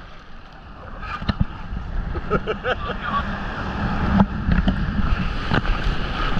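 Sea surf washing in around a GoPro held low in the shallows, a steady rush of water with a few sharp splashes against the camera and wind on the microphone.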